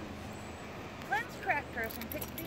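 A few short spoken words about a second in, over a steady low background hum.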